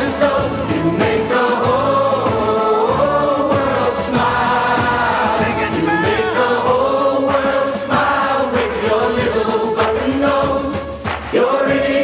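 A group of men and women singing a charity TV jingle together, choir-like, with band accompaniment.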